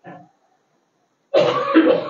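Someone clearing their throat: a brief sound just after the start, then a longer, louder, rough one in the second half.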